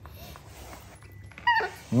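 A baby macaque gives one short, high-pitched squeak that falls steeply in pitch, about one and a half seconds in. A man's low hum begins right at the end.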